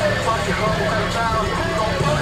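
Chevrolet Monte Carlo SS's V8 running with a steady low exhaust rumble as the car pulls away slowly, with a voice over it.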